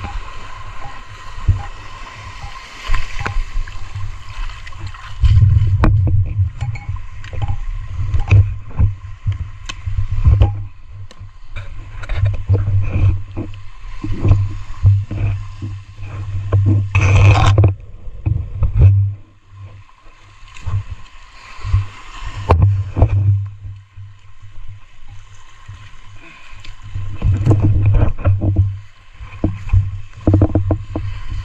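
Muffled underwater sound of a spearfisher swimming: water surging and sloshing against the camera in uneven waves, with many small knocks and a loud gush about seventeen seconds in.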